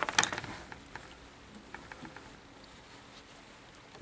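Sharp clicks and rustling of copper magnet wire being handled by fingers at a toroid winder's core, bunched in the first half second, then faint scattered ticks.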